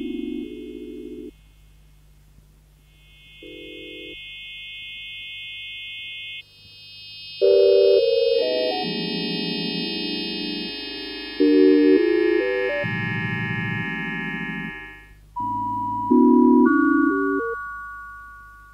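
Early electronic music built from oscillator sine tones: blocks of steady pure tones and tone clusters that switch on and off abruptly, high chords held over lower tones. Three loud entries come in the second half, over a faint steady low hum.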